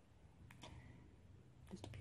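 Near silence with a few faint, short clicks: one about half a second in and a small cluster near the end.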